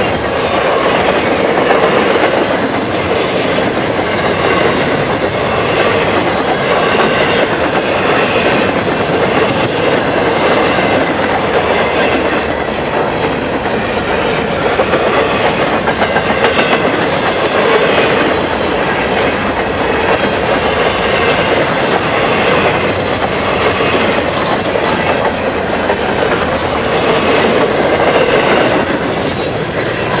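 Double-stack intermodal well cars of a CN freight train rolling past: a loud, steady noise of steel wheels on rail that does not let up.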